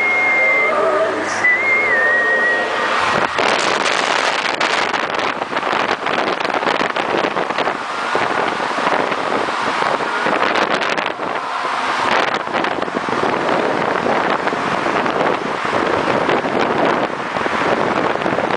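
A short tune with a whistle-like melody that cuts off about three seconds in. Then a loud, uneven rush of passing road traffic mixed with wind on the microphone.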